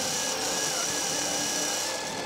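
Electric motors of an FRC robot's intake rollers and indexer running, a steady whine of several held tones whose pitch dips briefly near the middle.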